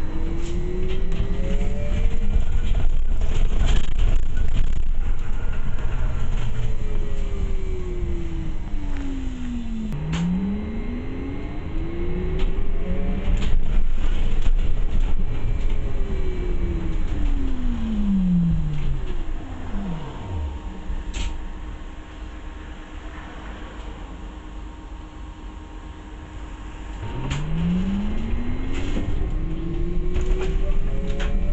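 Bus drivetrain heard from inside the cabin over a low road rumble, with a whine that climbs in pitch as the bus pulls away and sinks as it slows, rising and falling several times. About two-thirds of the way through it drops into a quieter stretch, then climbs again near the end as the bus moves off once more.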